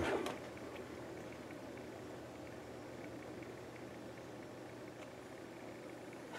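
Quiet room tone: a faint, steady hum.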